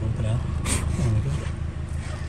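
A low, steady rumble with a man's brief murmured vocal sounds over it.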